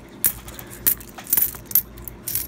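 Jefferson nickels clinking against one another as fingers slide them apart and sort them on a mat: about five short, sharp clinks.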